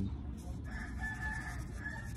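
A faint, drawn-out bird call, about a second and a half long, starting about half a second in, over a low steady background rumble.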